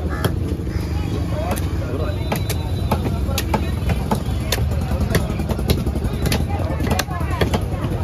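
Sharp knocks of a heavy cleaver against a wooden chopping block while a large fish is cut, coming irregularly about once or twice a second. Under them runs a steady low rumble of traffic, with scattered voices.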